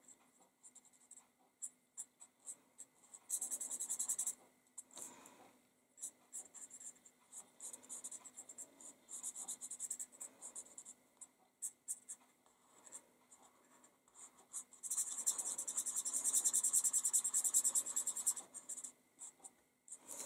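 Marker tip scratching across card as leaves are coloured in: many short strokes, with longer runs of continuous scribbling about three seconds in and from about fifteen to nineteen seconds.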